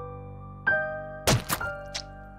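Slow piano music, single notes struck about once a second. About a second and a half in come two sharp thuds close together as a paper plate is pushed into a face.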